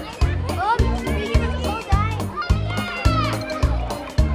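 Background pop music with a fast, steady beat and bass line, with children's voices calling and squealing over it.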